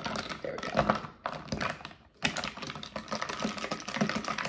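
A metal straw stirring and poking ice cubes in an iced coffee: a quick run of clinks and rattles, with a short pause about two seconds in. The ice is stuck together in a clump.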